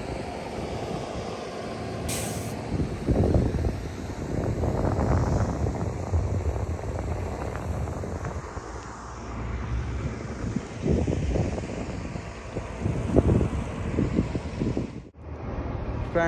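Uneven low rumble of a heavy vehicle engine, with a short hiss about two seconds in.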